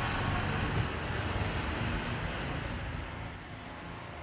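The background sound bed of a TV advertisement fading out: a low, hazy wash that grows steadily quieter.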